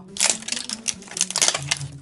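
Plastic wrapping of an LOL Surprise toy ball crinkling and crackling as hands peel it off, a quick run of small crackles.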